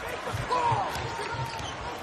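A basketball being dribbled on a hardwood court, a few soft bounces about three a second, over low arena crowd noise.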